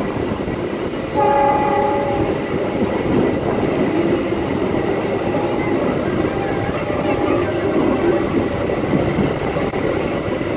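Passenger train running, heard from an open carriage door: a steady rumble of wheels on the rails. About a second in the train's horn sounds for roughly a second, and the running noise grows louder.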